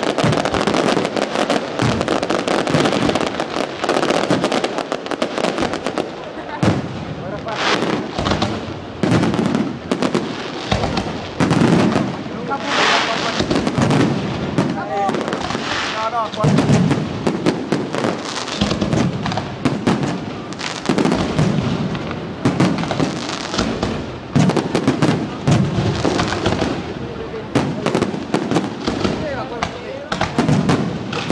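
Aerial fireworks shells bursting overhead in rapid succession: a continuous volley of bangs and crackling.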